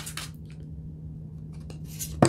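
Thick tarot cards being shuffled by hand: a few sharp card slaps and clicks at the start, then a quiet stretch with a couple of faint clicks near the end. A steady low electrical hum runs underneath.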